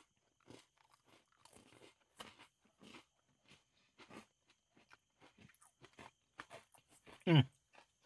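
Faint, irregular crunching of a Coca-Cola flavored Oreo being chewed, its filling studded with popping candy. A short 'hmm' comes near the end.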